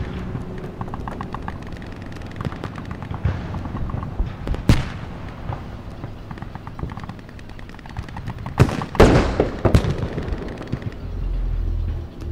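Gunshots: scattered single cracks, one sharp shot about five seconds in, then a quick burst of several shots about nine seconds in.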